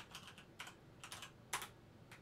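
Faint typing on a computer keyboard: a handful of irregularly spaced key clicks, the loudest about a second and a half in.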